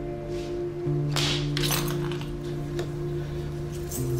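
Background score music of sustained low chords that shift about a second in, with a few brief, soft handling noises or clinks.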